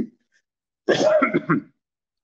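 A man clears his throat once, briefly, about a second in: a short harsh, rough vocal noise that ends with a falling pitch.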